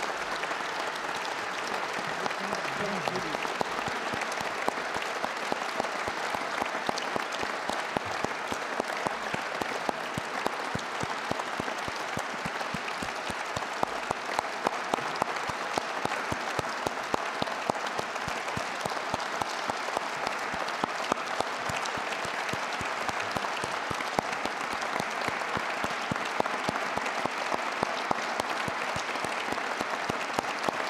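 An audience applauding steadily, many hands clapping without a break throughout.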